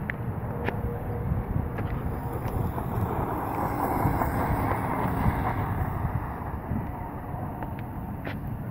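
Electric-converted Ofna Ultra LX 1/8-scale buggy with a 2250 kV brushless motor running over gravel. Its sound swells to a peak about four to five seconds in, then falls away, with wind on the microphone.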